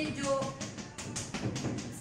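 Chalk tapping and knocking against a blackboard in a quick run of short strokes, with a few faint spoken sounds mixed in.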